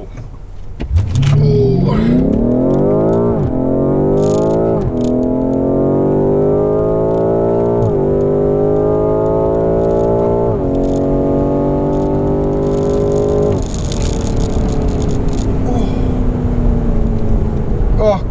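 BMW M5 Competition's twin-turbo V8 at full throttle, heard from inside the cabin as the car accelerates hard through the gears. The pitch climbs steeply in each gear, with four quick upshifts about 3, 5, 8 and 10.5 seconds in. About 13 seconds in the throttle lifts and the engine settles to a lower, slowly falling drone.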